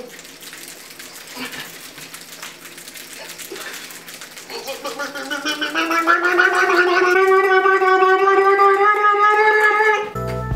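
A person's long, drawn-out vocal cry or moan. It starts about halfway through, after a few seconds of faint rustling, rises in pitch and is held loud to the end.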